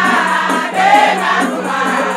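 A group of women singing together in chorus, with a shaken percussion rattle keeping a steady beat.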